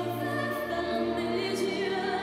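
Classical program music for an ice dance free dance: singing voices hold long notes over an orchestra, with the bass line shifting twice.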